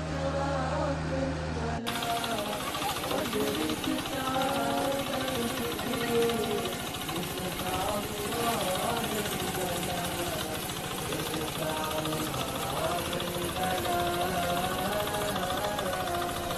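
Background music with a sung vocal. About two seconds in the sound changes abruptly to a fuller mix with a fast rattling pulse under the song.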